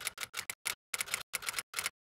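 Typewriter-style key-click sound effect: about a dozen short, sharp clicks in quick, uneven succession, stopping just before the end, as text is typed out on screen.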